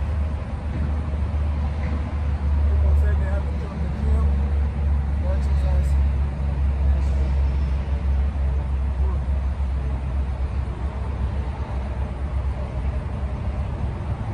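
Steady low rumble of nearby highway traffic, continuous and without a break.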